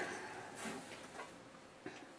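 Faint handling of a paper template on a plastic cutting mat: a soft rustle that fades, then a few light ticks.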